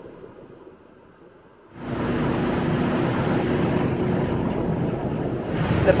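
A quiet start, then about two seconds in, an abrupt cut to a passenger ferry's engine running steadily on an open deck, with wind on the microphone and rushing water.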